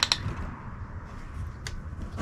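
Wind-up music-box mechanism in a German wooden incense-smoker figure clicking as it is turned. A last couple of quick ratchet clicks come at the very start, then faint handling and a single sharp click near the end. No tune plays; the music box does not seem to work.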